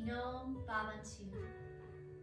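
A woman's voice singing a slow chant, two sung phrases in the first second and a half, followed by a single held tone, over soft plucked-guitar music.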